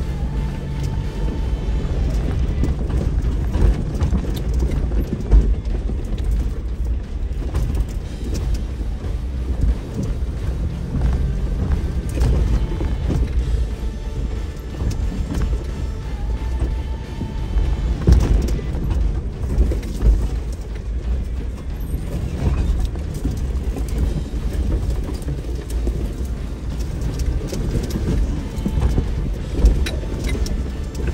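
Jeep crawling slowly over a rocky, washed-out trail, with a dense, irregular run of knocks and rattles from the body and suspension as it goes over the rocks. Music plays along with it.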